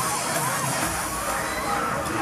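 Loud music from a fairground ride's sound system, with riders shouting over it; a deep bass comes in just under a second in.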